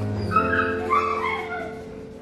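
A dog whining in a few short cries that slide down in pitch, over steady background music.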